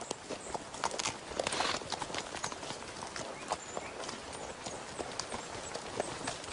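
Horse hooves clip-clopping in an uneven rhythm.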